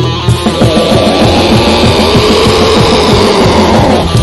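Black metal song with the full band playing loud: distorted electric guitars and dense, fast drumming.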